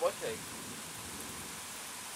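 Light rain falling: a steady, soft hiss.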